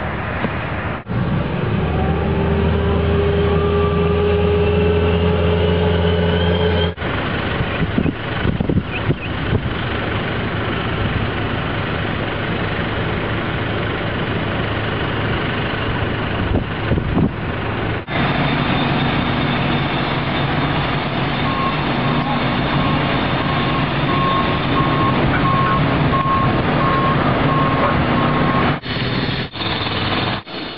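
Construction-site machinery running, heard across several edited clips that change abruptly from one to the next, with an engine droning and rising in pitch in the first few seconds. Past the middle, a vehicle's reversing alarm beeps repeatedly for several seconds.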